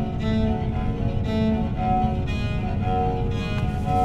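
Film score of bowed strings playing a slow figure of short repeated notes, over a steady low rumble.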